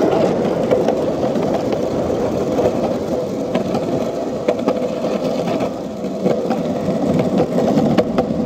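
Skateboard wheels rolling along a concrete street: a steady rumble with scattered clicks as they cross cracks and joints in the pavement.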